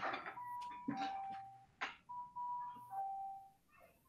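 A two-note electronic chime, a higher tone stepping down to a lower one, sounding twice, with clicks and rustling noise around it.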